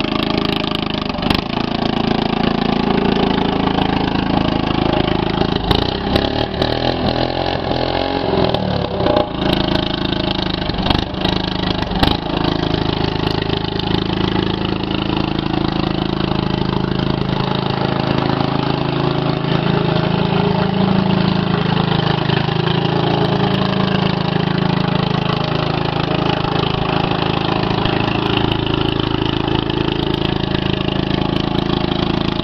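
Engine of a home-built, lifted riding lawn mower running steadily through tall open exhaust pipes as the mower is driven. A few sharp knocks and clicks come between about 6 and 12 seconds in.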